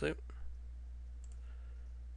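A pair of faint computer mouse clicks a little over a second in, over a steady low hum.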